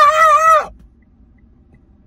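A man's long, drawn-out shout of "up!" with a wavering pitch that cuts off sharply under a second in, leaving only the faint low rumble of a car cabin.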